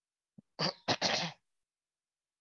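A person clearing their throat: two short, rough bursts, about half a second and one second in.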